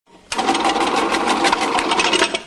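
Electric fruit-slicing machine running, cutting apples into slices: a rapid, even clatter over a steady motor hum, starting about a third of a second in.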